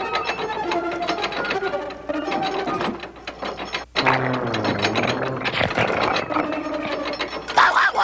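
Cartoon sound effect of giant clockwork gears turning, a rapid ratcheting tick-tick over held music tones, with a brief break just before halfway.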